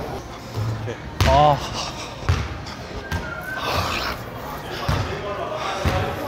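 Basketball bouncing on a gym floor: a loose, irregular dribble of about eight low thuds, with brief voices in between.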